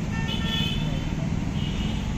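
A vehicle horn sounds over steady street traffic noise: one held honk lasting most of the first second, then a shorter, fainter one near the end.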